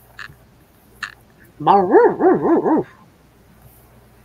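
A dog barking: a quick run of about five yappy barks, each rising and falling in pitch, lasting just over a second.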